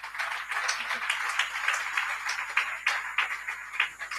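Audience applauding: a dense patter of many hands clapping.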